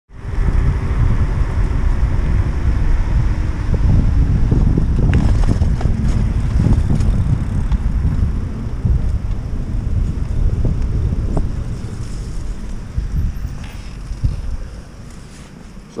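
Wind buffeting the microphone of a camera on a moving Onyx RCR electric bike, a dense low rumble with scattered knocks, mixed with tyre and road noise. It dies down over the last few seconds as the bike slows to a stop.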